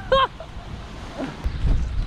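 A short laugh at the very start, then a low rumble of wind buffeting the microphone that grows louder in the second half.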